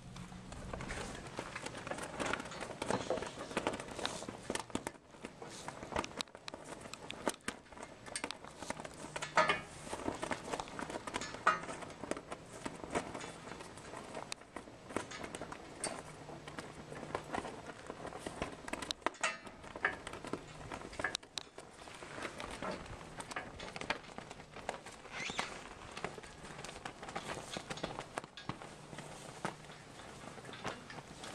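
Footsteps and camera-handling noise: irregular crunches and creaks with a few sharper squeaks.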